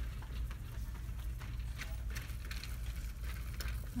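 Store background noise: a steady low hum with faint scattered ticks and clicks.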